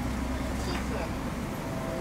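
Steady low cabin hum of a Boeing 777-300ER at the gate before pushback, with indistinct voices murmuring in the background.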